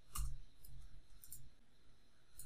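A few computer keyboard keystrokes: a sharp click just after the start and fainter ones later.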